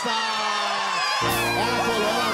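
A group of women cheering and whooping in celebration of a right answer, with a game-show music sting and its deep bass cutting in about a second in.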